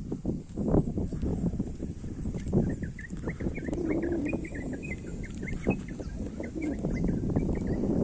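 Footsteps of someone walking on a paved road, heard as irregular low thumps. From about two and a half seconds in, a bird calls a quick run of short, high chirps that continue to the end.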